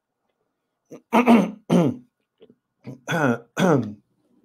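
A man clearing his throat, in two pairs of short voiced sounds with falling pitch, about a second in and again near the end.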